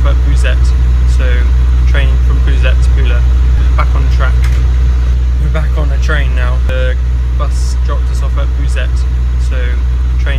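Voices talking over the steady low rumble of a train, heard from inside the carriage.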